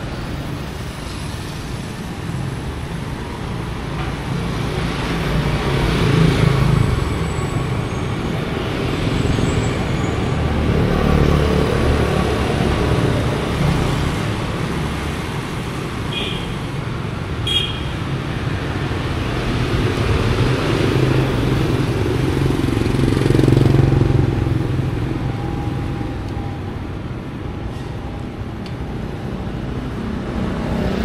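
Street traffic dominated by motorbikes riding past, the engine noise swelling as one goes by about six seconds in and again around twenty-three seconds. Two brief high chirps sound just past the middle.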